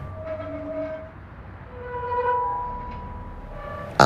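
Red metal playground swing set creaking as an empty swing sways on its chains: a few drawn-out squeaks, each about a second long, one near the start, one in the middle and a shorter one near the end.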